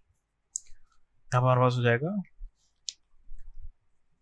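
A man's voice for about a second in the middle, with a few faint, sharp clicks around it.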